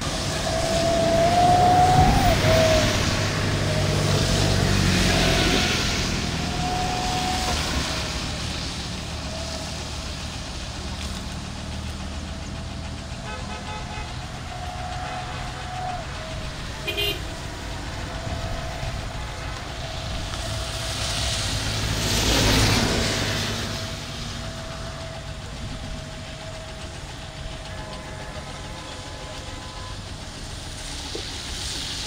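Road traffic on a wet road: vehicle engines and tyre hiss swell and fade as vehicles pass, loudest in the first few seconds and again about two-thirds of the way through. A thin steady tone runs underneath.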